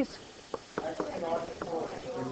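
A few sharp, irregular ticks of a stylus tapping on a screen as numbers are written, with faint voices murmuring in the background.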